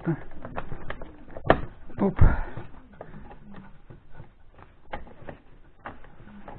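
Plastic clicks and knocks from a refrigerator's thermostat control panel being pressed back into place, with a heavier thump about two seconds in and lighter clicks after it.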